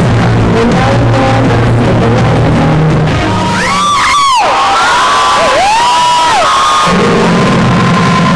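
Live synth-rock band playing loud through a PA, recorded distorted on a camcorder. About three seconds in the bass and drums drop out and high, arching gliding tones take over; the full band comes back in near the seventh second.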